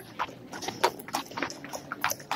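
Horse's hooves striking a paved street at a walk, a few clops a second.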